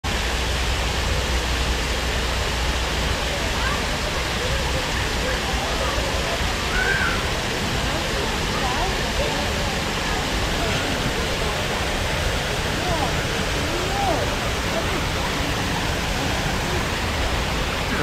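Steady rushing of a small waterfall pouring over rocks into a pool.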